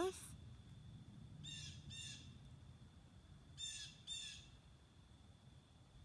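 A bird calling four times, in two pairs of short calls about half a second apart, with a couple of seconds between the pairs.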